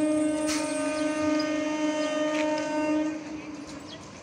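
Indian Railways electric multiple unit (EMU) train sounding one long steady horn blast as it approaches, the horn cutting off about three seconds in. The train's running noise on the track carries on underneath and after it.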